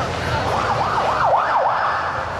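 Ambulance siren sounding a fast yelp, a rising-and-falling wail at about four sweeps a second. It starts about half a second in, over crowd noise.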